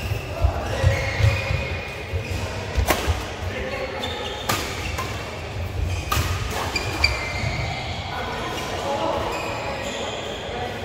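Badminton rally: racket strings striking a shuttlecock, three sharp hits about a second and a half apart near the middle, with thuds of footwork and short shoe squeaks on the court floor. Voices murmur in a large, echoing hall.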